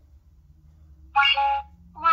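Toy cash register's barcode scanner giving one short electronic beep about a second in, as a toy food item is scanned.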